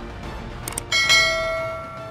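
Background music ending on a single bell-like chime struck about a second in, which rings out and fades away.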